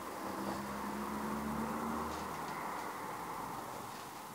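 A motor vehicle passing: engine tone and road noise swell to a peak about halfway through, then fade away.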